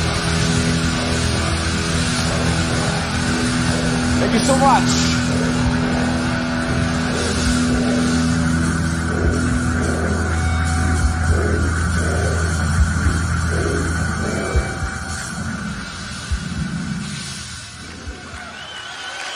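Heavy metal band finishing a song live: a distorted guitar and bass chord held and ringing, with scattered drum and cymbal hits. It dies away over the last few seconds.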